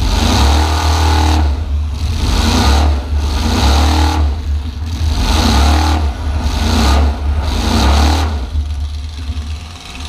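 2004 Dodge 3/4-ton demolition-derby pickup's engine, heard from inside the cab, revved hard about six times in a row, roughly a second and a half apart, then easing back toward idle for the last second or two.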